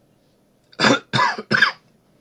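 A person coughing three times in quick succession, starting a little under a second in.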